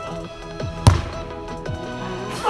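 A football kicked once, a single sharp thump a little under a second in, over background music.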